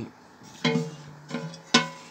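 Hollow sheet-metal fuel tank of a Vari Terra two-wheel tractor knocked about three times as it is handled, each knock ringing briefly with a pitched metallic tone; the last knock is the sharpest.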